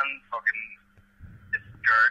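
Men talking in short fragments on a phone call, one voice thin and narrow as if through the phone line, over a steady low hum.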